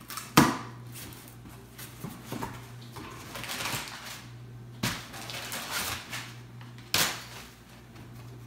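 A cardboard box being opened and crumpled brown packing paper pulled out: a sharp crack about half a second in, then paper rustling, with two more sharp knocks near the middle and near the end.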